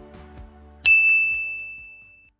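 Soft background music with a light beat tailing off, then a single bright chime about a second in that rings out and fades: the closing sting of an end-card jingle.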